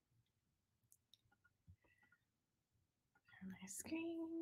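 Near silence: room tone with a few faint clicks, then a short, soft hum from a woman's voice near the end.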